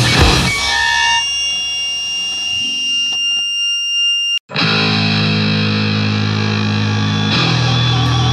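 Distorted electric guitar: the full band cuts off early, leaving high ringing feedback tones. After a sudden short gap about halfway through, sustained distorted guitar chords ring out, changing to another chord near the end.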